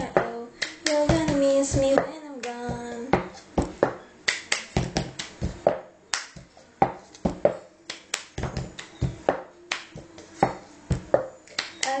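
Cup-song rhythm played on a plastic cup: hand claps, taps on the cup and the cup knocked and set down, in a steady repeating pattern. For the first three seconds a voice holds a few sung notes over it, then the rhythm runs on alone.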